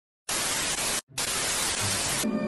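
Television static: a steady hiss that comes in a moment after the start, cuts out for a split second at about one second, then resumes.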